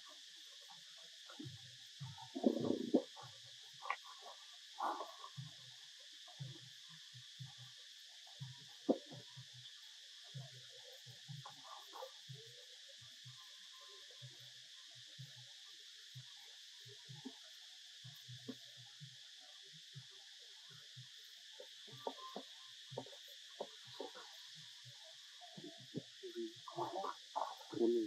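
Steady high-pitched buzzing of an insect chorus in the forest. Scattered faint knocks and rustles sit over it, with a few louder short sounds, the loudest about two and a half seconds in.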